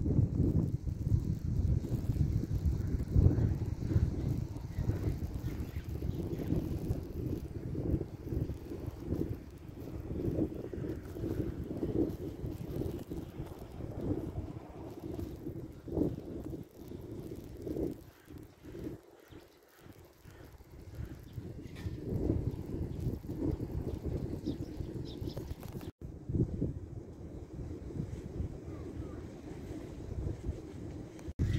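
Wind buffeting the microphone outdoors: a gusty low rumble that rises and falls, easing off for a couple of seconds a little past the middle.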